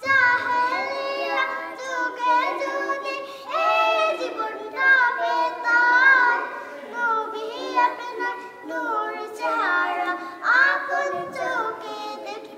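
Young girls singing a Bangla gojol, an Islamic devotional song, together with no instruments. They sing phrase after phrase, holding and bending the notes, with short breaths between lines.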